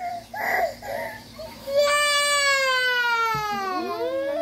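A young child's voice: a few short sounds, then about two seconds in a long wail that slowly falls in pitch.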